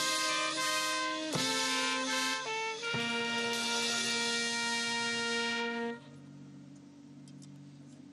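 Military marching band with brass playing the closing bars of a piece in sustained chords. The last chord is held for about three seconds and cuts off about six seconds in, leaving a faint steady hum.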